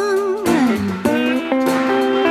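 Song music with guitar between sung lines: about half a second in, a held note slides down in pitch, then fresh plucked guitar notes ring out.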